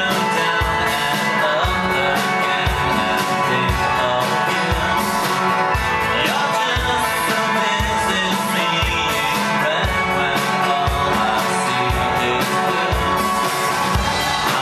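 A live synth-pop band playing through the venue PA, with a kick drum about twice a second, electric guitar and synths under a man singing into a microphone.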